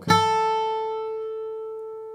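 A single note picked on a steel-string acoustic guitar capoed at the second fret: the third fret of the high E string, an A, struck once with a flatpick on an upstroke and left to ring, fading steadily.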